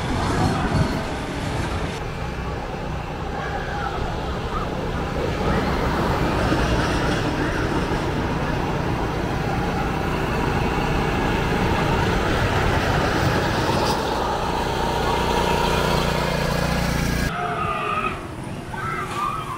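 Train of the Phoenix wooden roller coaster running along its wooden track: a steady deep rumble that starts with a cut about two seconds in and holds until it cuts off abruptly near the end, with voices over it.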